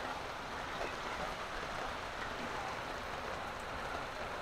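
Steady rain falling: an even, soft hiss with no distinct drops or breaks.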